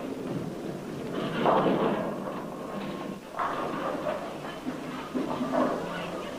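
Bowling alley noise: bowling balls rolling and pins crashing, in several noisy surges, the loudest about a second and a half in.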